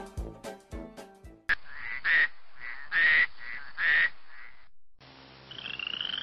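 Swing-style brass music that cuts off about a second and a half in. It is followed by recorded animal call sound effects: three loud calls over a steadier droning call, then near the end a short rising warble.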